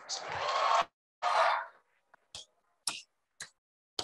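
Short bursts of audience cheering and applause that cut off abruptly, followed by a few scattered single hand claps.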